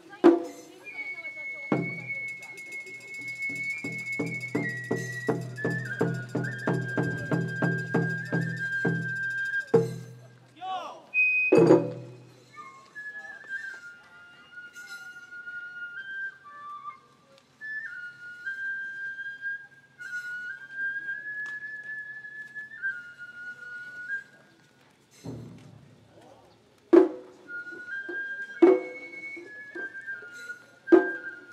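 Matsuri-bayashi festival music led by a shinobue bamboo flute playing a melody of long held high notes. For about the first ten seconds it runs over a fast steady beat of drums with metallic clinking. From about 13 to 25 seconds the flute plays nearly alone, and single drum strikes come back near the end.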